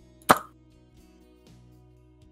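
Quiet background music with held notes, broken by a single short, sharp pop about a third of a second in.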